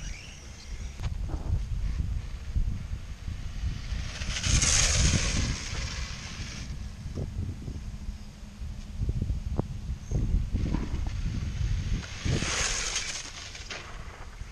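Wind rumbling on the microphone while a small electric RC drift car runs on asphalt, with two longer hissing swells, about four seconds in and again near the end, as its tyres slide.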